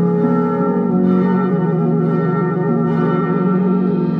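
Bamboo quena tuned in G-flat playing a slow melody: it steps down to a long held note about a second in and sustains it with a steady vibrato. Underneath runs a backing accompaniment of sustained low notes.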